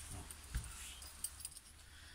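Faint handling sounds as a phone is set in place: a few light clicks and rustles over a low steady hum.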